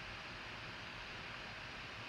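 Faint, steady hiss of room tone and microphone noise, with no distinct events.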